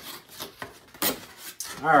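Hands rummaging inside a cardboard box, the cardboard flaps and packaging rubbing and scraping, with a sharper knock about a second in.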